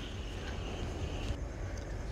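Faint, steady outdoor street background noise with a low rumble; no single sound stands out.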